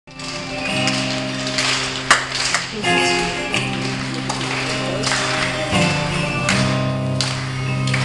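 Live band playing an instrumental introduction: acoustic guitar strumming over long held bass notes that change chord every second or two, with no singing yet.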